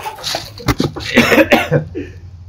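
A man coughing a few times, in the spicy-food setting typical of the burn of a raw chilli pepper.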